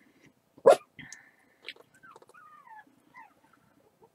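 A dog gives one short, sharp bark about two-thirds of a second in, followed by soft, high whining that slides down in pitch.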